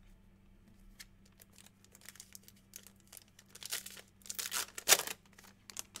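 Trading cards and their packaging being handled: faint scattered clicks at first, then louder crinkling and ripping from about three and a half seconds in, the sharpest rip just before five seconds.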